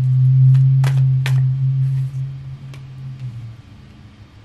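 A loud, low, steady hum that fades away about three and a half seconds in. Over it come two sharp snaps about a second in as a deck of tarot cards is handled.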